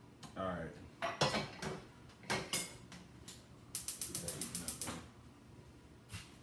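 Kitchen work sounds: a few separate sharp clicks and clatters, then a quick even run of about ten clicks in just over a second.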